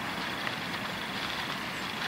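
Steady outdoor background noise, an even hiss with no distinct events, between a man's words.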